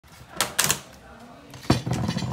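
Things being handled on a tabletop: a few short clicks around half a second in, then one heavy knock near the end, like a glass bottle set down on the table.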